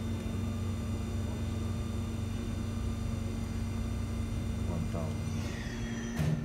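Mori Seiki MV-40B machining center spindle running steadily at its 8,000 RPM maximum, a very quiet, even hum with a thin high whine.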